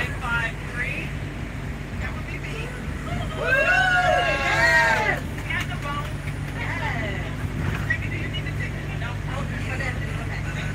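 Steady low drone of a moving bus heard inside its cabin, with passengers' voices over it; one loud, drawn-out voice stands out about three and a half seconds in.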